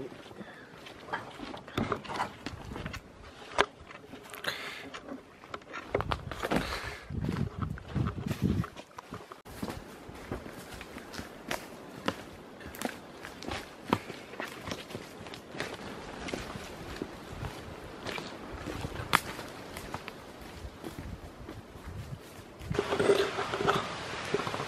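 Footsteps of people walking along a forest track, with irregular crunches and clicks from the ground cover and brushing vegetation. There is a stretch of louder low rumbling about six to nine seconds in.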